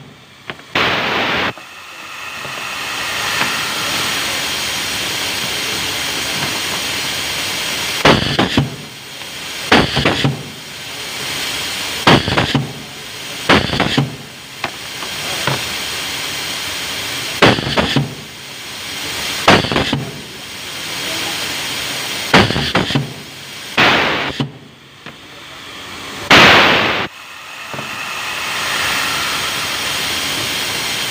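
Pneumatic cable insulation stripping machine cycling: from about eight seconds in, its air cylinder strokes with a sharp clack and a burst of air roughly every two seconds, about ten times, over a steady hiss.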